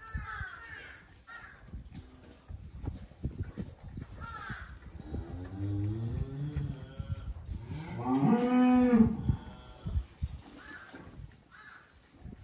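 Japanese Black (Wagyu) cattle lowing beside a newborn calf: a low, soft moo in the middle, then a louder, higher moo about eight seconds in that rises and falls. Under the calls, soft wet licking and rustling of straw as the cow licks the calf.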